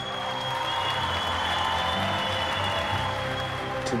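An audience applauding, with steady background music playing underneath. The clapping dies down near the end.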